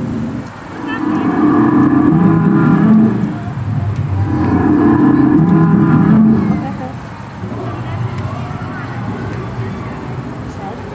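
Animatronic stegosaur's recorded bellow played through a speaker, two long low calls a second apart, set off by the visitor's button press.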